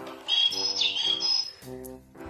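Electronic cat toy giving a high-pitched bird-like chirp, about a second long with a quick downward slide partway through, over background music.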